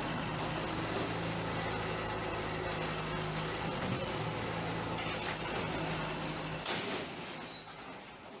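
Komatsu D31E crawler bulldozer's diesel engine running with a steady hum, fading away in the last second or so.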